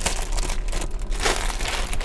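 Clear plastic bag crinkling and rustling irregularly as it is handled.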